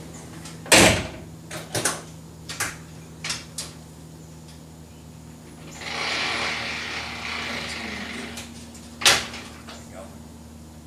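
A car door is shut about a second in, followed by a few lighter clicks and knocks from inside the car. From about six seconds in, a steady whirring hiss runs for about two and a half seconds, and a sharp knock comes near the end.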